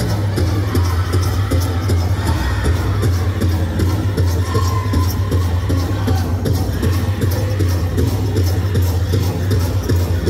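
Powwow drum group playing a song for the dance: an even, steady beat on a large shared drum with the singers' voices carried over it.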